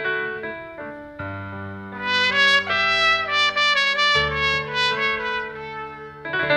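Trumpet playing a slow melody of long held notes over a low accompaniment, rising to louder, higher notes about two seconds in.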